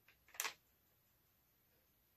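A brief rustle of a sheet of paper being handled, about half a second in, against near silence.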